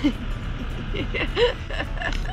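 Steady low engine and road rumble inside a moving Sprinter camper van's cabin, with short bursts of a woman's laughter at the start and again about a second and a half in.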